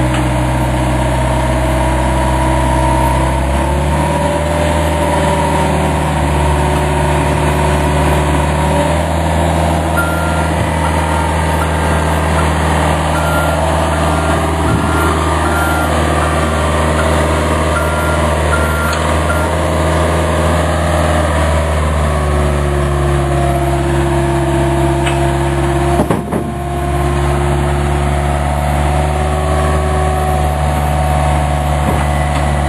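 Heavy diesel equipment engine running steadily, its speed stepping up a few seconds in. From about ten to twenty seconds in, a backup alarm beeps about once a second. There is a single knock near the end.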